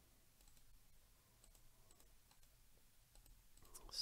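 Near silence broken by a few faint, sparse clicks of a computer mouse and keyboard as text is selected, copied and pasted, with a breath near the end.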